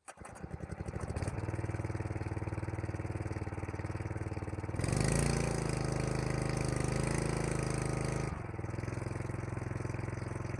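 A 3 hp petrol water pump engine starting cold on choke: it sputters and catches within about a second, then runs steadily while warming up. About halfway through it runs louder for some three seconds, then settles back to a steady run.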